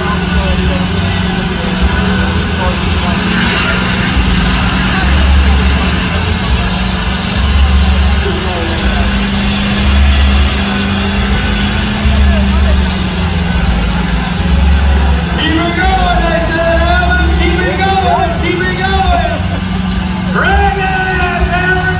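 Lifted mud truck's engine running at idle, with a deep pulse about every two and a half seconds. People's voices come in over it in the last few seconds.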